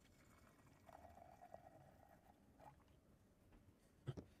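Very faint pour of brewed coffee from a French press into a glass carafe, a thin stream that stops a little past halfway.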